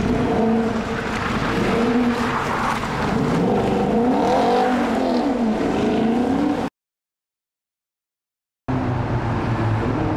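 Car engines revving hard as stunt cars race through a street junction, their pitch rising and falling in sweeps as they pass. About two-thirds of the way through the sound cuts out completely for about two seconds, then engine noise comes back.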